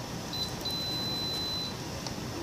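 Canon imageRUNNER ADVANCE C2220i copier's control panel beeping as its touch-screen key is pressed to finish the scan and send the job: a short high beep, then a longer steady beep of about a second at the same pitch.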